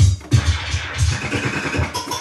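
DJ beat juggling on two turntables: a drum beat cut up by hand on vinyl through a DJ mixer, with rapid heavy kick hits and scratch sounds over it.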